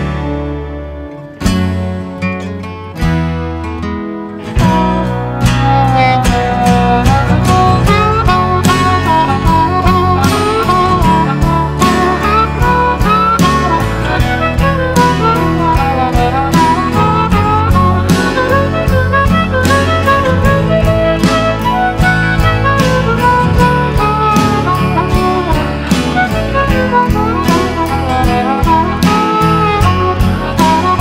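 Instrumental break of an acoustic Americana band song, with no singing. A few ringing chords sound and die away one by one, then about four and a half seconds in the full band comes in with guitars and a lead melody line.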